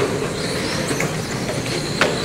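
Several 1/10-scale electric RC race cars with 10.5-turn brushless motors running on an indoor track: a steady whir of motors and tyres, with a faint high whine.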